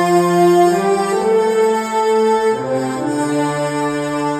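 A brass section playing sustained, full chords on its own, moving to new chords about a second in and again past the midpoint. This is the isolated brass layer of an epic orchestral pop arrangement, added for a sense of pride and grandeur.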